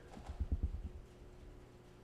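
A quick run of several soft, low thumps within the first second, then only a faint steady hum.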